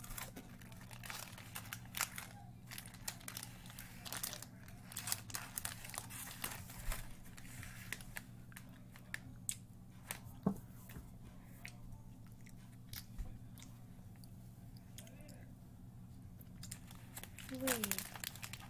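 Plastic snack wrapper crinkling and rustling in hands, in irregular bursts over a steady low hum.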